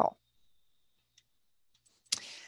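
Near silence with a faint steady high tone, broken by a single faint click about a second in, typical of a computer mouse click advancing the presentation slide.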